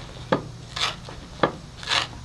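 Kitchen knife chopping fresh green onions on a wooden cutting board, four chops about half a second apart.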